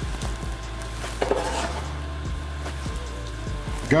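Light sizzling from hot sautéed shrimp and pan juices freshly poured into a stainless steel mixing bowl, with a few soft knocks of a wooden spoon against the bowl as it is stirred.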